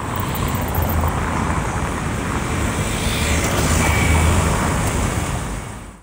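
Steady roar of heavy city traffic, fading out near the end.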